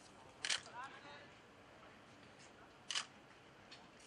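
Two sharp, bright clicks about two and a half seconds apart, with a short voice call just after the first one, over a faint background.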